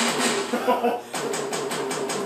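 Indistinct talking between band members in a small room.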